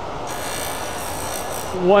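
Pen-turning lathe running steadily with a resin pen blank spinning on it. A higher hiss rises over the motor for about a second and a half in the middle.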